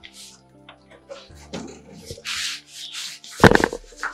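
Scuffling and scraping noises from a chase, with a loud thump about three and a half seconds in, over background music with sustained notes.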